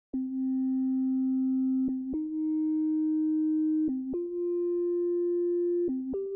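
Synthesizer with a pure, sine-like tone playing the opening of an electronic track. It holds long notes of about two seconds each, every one higher than the last, with a short lower note between them.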